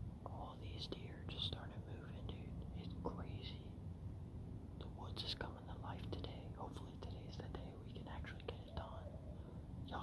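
A man whispering in short, breathy phrases with pauses between them.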